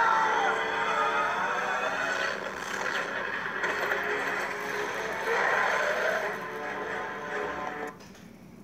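Film soundtrack music played through laptop speakers and picked up by a phone, with held notes and some sliding pitches. It drops away suddenly at the end as the clip changes.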